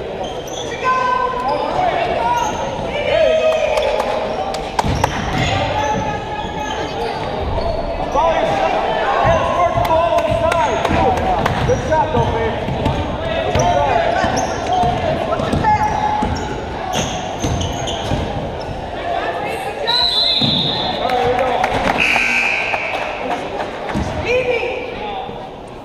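Basketball game in a gymnasium: a ball dribbling on the hardwood floor amid the shouts and chatter of players, coaches and spectators, echoing in the hall.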